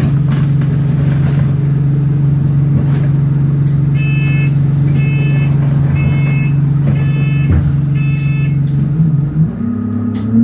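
A London bus's engine and drivetrain running steadily, heard from inside the saloon, the drone shifting in pitch near the end. About halfway through, five short electronic beeps sound about a second apart.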